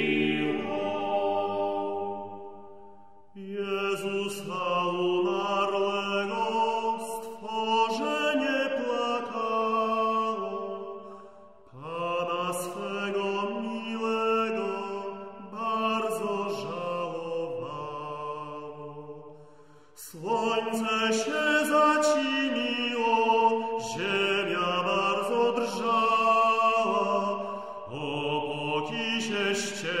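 Chant-like singing of a late-15th-century Polish Passion hymn, in long melodic phrases of about eight seconds, with brief breaths between them about 3, 12, 20 and 28 seconds in.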